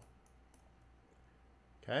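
A few faint clicks of a computer mouse while marking up the chart, in a quiet pause; a man says "okay" at the very end.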